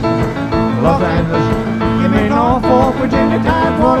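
Live rock and roll band playing between sung lines, with a lead line bending up and down in pitch over the backing. A sung word comes in right at the end.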